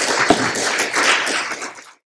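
Audience applauding, the clapping dying away and cutting off near the end.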